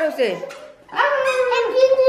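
A toddler whining and starting to cry, a long wavering wail that begins about a second in, after a short falling cry.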